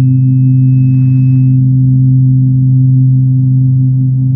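A loud, steady low electronic drone of sustained tones, with a faint thin high tone that fades out about a second and a half in.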